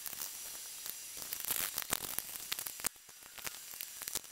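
Light metallic clicks and rattles from cable lugs and the polarity switch's contact plate being unbolted and lifted out of an old Airco transformer welder's cabinet, over a faint steady hiss.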